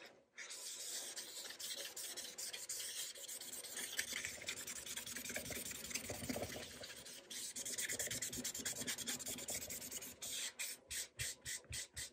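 A cloth rag dampened with dye solvent rubbing over the finished surface of a dyed quilted maple guitar body, wiping dye off the centre. The rubbing is continuous at first, then breaks into short quick strokes, about four a second, near the end.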